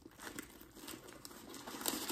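Packing paper crinkling as it is handled and pulled out from inside a new bag, an irregular rustle that gets louder near the end.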